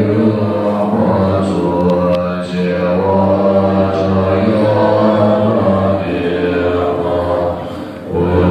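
Tibetan Buddhist monks chanting prayers in unison, deep voices held on long, steady notes, with a short pause for breath near the end.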